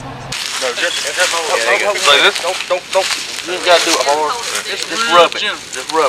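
Voices of several people talking over one another, too indistinct to make out, with crackling and rustling noise. The voices start abruptly after a brief low hum in the first moment.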